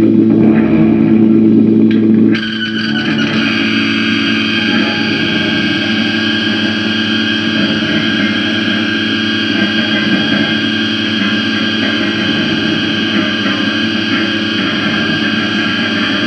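Music: a distorted, effects-laden guitar drone that changes abruptly about two seconds in from a low, heavy sound to a denser, brighter held texture.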